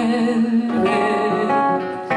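A woman singing a long held note, then moving on to other notes, over plucked and strummed acoustic guitar, in a zamba.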